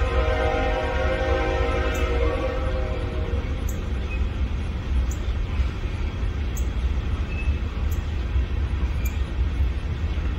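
A train on the move, slowly gathering speed: a steady low rumble throughout, with a steady pitched tone that fades out about three seconds in and faint ticks about every second and a half.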